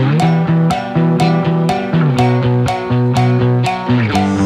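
Instrumental passage of a rock song: guitars and bass guitar over a steady drum-kit beat, with no singing. A low bass note slides up at the start and slides down about halfway through.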